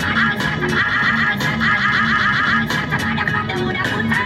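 Trance dance music played from a DJ controller setup: a fast, repeating high synth figure runs over a steady bass line. The high figure thins out a little past halfway.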